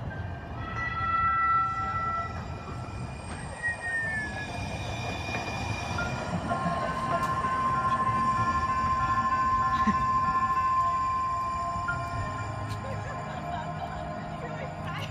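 A light rail tram passing on street tracks, its running noise swelling and peaking about eight to ten seconds in, with a long steady whine. Short electronic tones sound in the first two seconds from a motion-activated interactive sculpture.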